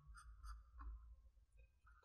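Faint short squeaks and scratches of a Sharpie marker tip on paper, a few quick strokes in the first second or so, then quieter.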